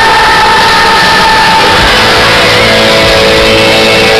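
Live rock band playing loud: a high note is held for the first couple of seconds, then sustained electric guitar chords ring on.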